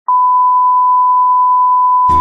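A loud, steady beep of one unchanging pitch that starts abruptly and holds without a break: a pure sine test tone.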